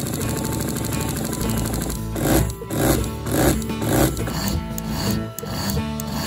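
12-volt diaphragm sprayer pump cycling: it runs steadily at first, then from about two seconds in switches on and off in quick pulses a couple of times a second, heard over background music. Pump cycling like this gives an ineffective spray and wears the pump, and is cured by adjusting the bypass valve.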